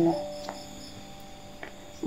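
Faint background sound bed under an audiobook narration: a soft held tone that fades within the first second, and quiet, evenly spaced high chirps.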